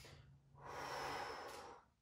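A woman's breath during a bend-and-reach exercise: one soft, long breath lasting a little over a second, starting about half a second in.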